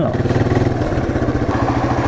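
Motorcycle engine running steadily at low revs as the bike slows to a stop.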